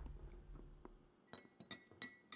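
A few light, ringing clinks of kitchen dishware struck by hand, irregularly spaced, starting about halfway through. A faint low rumble fades out before them.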